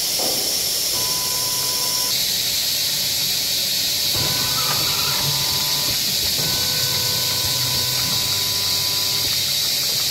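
Bottle rinsing and filling monoblock running, with a loud, steady hiss throughout. A faint whine comes and goes, and a low hum joins from about four to nine seconds in.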